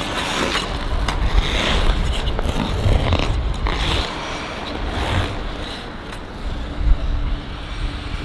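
Figure skate blades scraping and carving across the ice in a quick footwork sequence: repeated hissing edge scrapes that swell and fade every second or so, over a low rumble, with the loudest scrape about seven seconds in.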